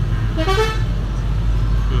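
Musical 'telolet' horn of a passing bus: a short run of several horn notes about half a second in, over the steady low rumble of traffic.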